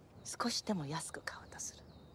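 Speech only: a woman speaking Japanese quietly.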